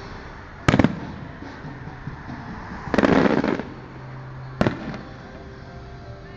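Aerial fireworks shells bursting: a sharp bang just under a second in, a longer burst lasting about half a second around three seconds in, and another sharp bang a little before five seconds.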